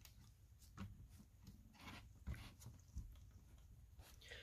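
Faint handling noise from a cardboard board book's page being turned: a few soft rustles and light knocks.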